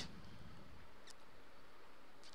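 A single faint computer mouse click about a second in, opening a program, over a steady low hiss.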